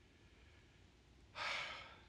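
A man's single audible breath, a sigh-like rush of air lasting about half a second, about one and a half seconds in, over faint room tone.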